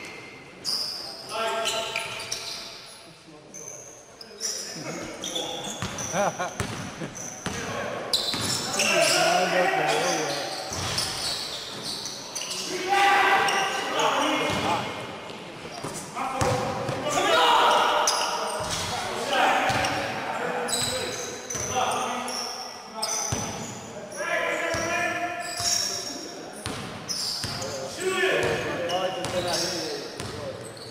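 Basketball dribbling and bouncing on a hardwood gym floor during a game, the impacts echoing in a large hall, with players' voices shouting and calling out over it at intervals.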